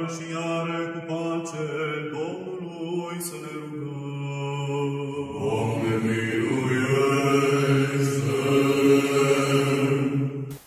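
Chanting voices in long, held notes, dropping to a lower pitch and growing louder about five seconds in.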